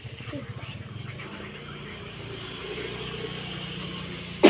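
A motor engine running, a low steady drone that grows slightly louder in the second half.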